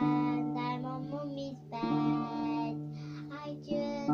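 A young girl sings while strumming a small pink child-size acoustic guitar. Three strummed chords, roughly two seconds apart, ring on under her voice.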